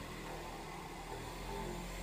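Large electric car buffer running with a steady low hum while a forearm is pressed on its soft pad.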